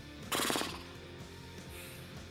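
Background music playing steadily under a pause in talk, with one brief rapid rattling burst about a third of a second in.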